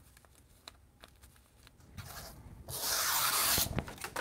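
A few faint clicks, then a rushing rustle of packaging being handled, loudest for about a second near the end.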